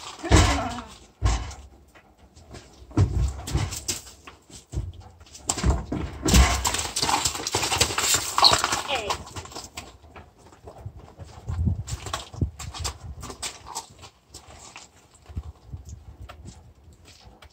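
A mule's hooves thumping and clattering on a horse trailer's matted loading ramp as it steps on and backs off it, a string of heavy irregular hoof strikes.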